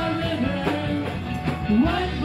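Gospel vocal group of women singing live into microphones with electric keyboard accompaniment, amplified through a PA. The voices hold notes and slide between them.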